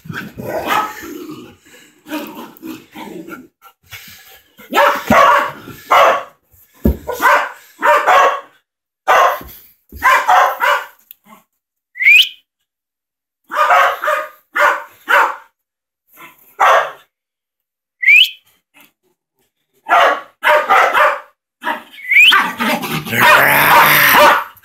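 Dog barking in repeated bursts of short barks during rough play, with brief pauses between bursts.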